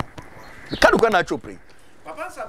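A single short, high-pitched vocal cry about a second in, rising and then falling in pitch.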